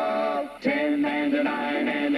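Male singing with music, a cartoon jingle: one long held note that breaks off about half a second in, then, after a short gap, a new phrase of short notes stepping up and down in pitch.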